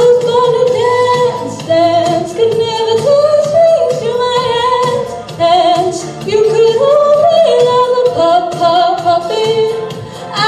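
A young woman singing solo into a handheld microphone, holding long notes that step up and down in pitch, with no clear words.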